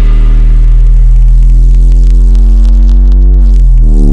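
A single loud, sustained synth bass note from a drum and bass track, held with the drums dropped out. Its pitch bends near the end.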